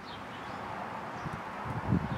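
Steady hiss of outdoor background noise, with a few soft low thumps near the end.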